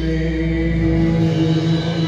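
Live country band playing, holding a steady chord of guitars and bass.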